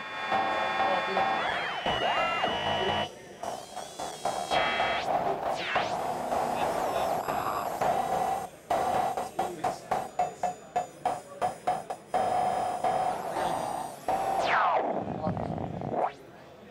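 Modbap Trinity 2.0 drum module playing its Clang algorithm, a ring-mod/FM metallic drum synth: ringing metallic tones whose pitch bends and glides as the knobs are turned. A quick run of repeated hits, about three a second, fills the middle, and a falling sweep comes near the end.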